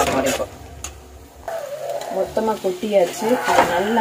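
Metal slotted spoon stirring and tossing noodles and vegetables in an aluminium pot, with a few sharp knocks of the spoon against the pot near the start and again about three and a half seconds in.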